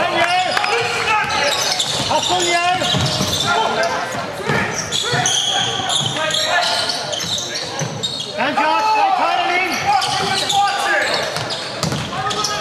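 A basketball being dribbled on a hardwood gym floor during play, with the voices of players and onlookers in the gym.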